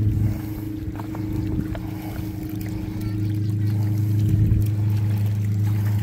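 Steady low engine drone holding one unchanging pitch, a little quieter for the first few seconds.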